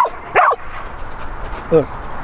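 A dog giving a short, high yip near the start, an attention-seeking whine as it jumps up at its handler.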